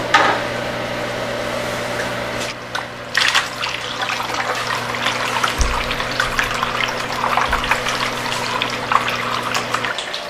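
A hydroponic water pump is plugged in with a click at the outlet and hums steadily. About three seconds in, water starts rushing and splashing as it gushes from the inlet fitting into the empty flood-and-drain tray, filling it.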